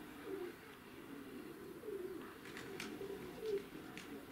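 Domestic pigeons cooing faintly, low warbling coos repeating on and off, with a couple of brief high-pitched sounds around the middle.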